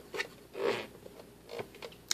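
Small clicks and scuffs of plastic as a hand works at the clear water tank of a Gurin compact dehumidifier, with a longer rub about half a second in.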